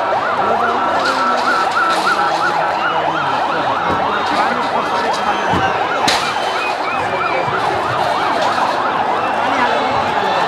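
Police sirens wailing in quick up-and-down sweeps, more than one overlapping, over the noise of a large crowd.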